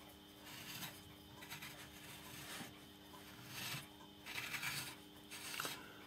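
Faint, repeated scraping and grating of a light bulb's metal screw base against a lamp holder's threads as it is worked at and fails to screw in.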